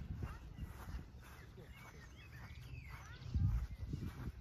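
Wind rumbling on the microphone, with a few faint high chirps in the middle and a louder gust of rumble about three and a half seconds in.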